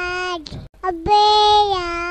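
Vivo phone message ringtone: a high singing voice holds one note that dips in pitch and breaks off with a short breath about half a second in. After a brief gap the phrase starts again, flicking up quickly into a long held note that drops a step near the end.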